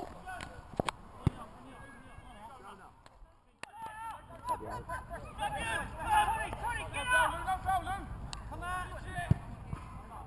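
Players and spectators shouting and calling from across an open football pitch, too distant to make out. There are a few sharp thuds from a football being kicked in the first second or so and another about nine seconds in. The sound drops out briefly a little past three seconds.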